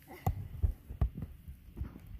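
A run of irregular dull thumps and knocks, about six in two seconds, with the loudest near the start and around the middle.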